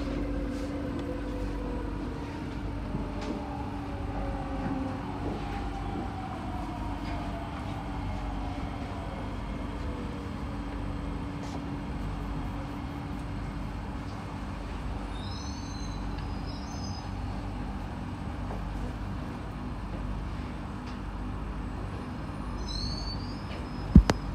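Cabin sound of an SMRT C151A Kawasaki electric train braking into a station: the traction motor whine falls in pitch over the first ten seconds as the train slows, over a steady hum and low rumble. After it stops the steady hum continues, with a few short high chirps later on and a sharp loud sound at the very end.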